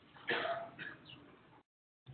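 A man clearing his throat: a short rasp, then a softer second one.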